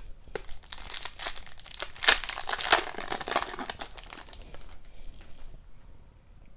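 Foil wrapper of a hockey card pack being torn open and crinkled by hand, loudest in the middle and dying away shortly before the end.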